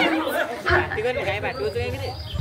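People talking: speech with chatter among the onlookers.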